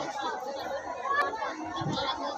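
Several people talking over one another, with no single voice standing out, and a single short click about a second in.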